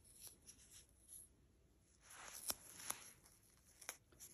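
Faint scratchy rustling and a few small ticks of fingers peeling the paper backing off a trimmed strip of adhesive knit blister dressing, loudest about two to three seconds in.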